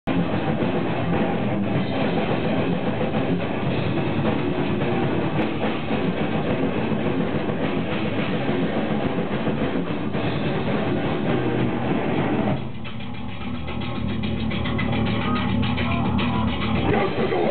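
A live grindcore band playing loud, with guitars and a drum kit. About twelve and a half seconds in, the full sound drops away to a thinner, lower part with a fast, even rhythm.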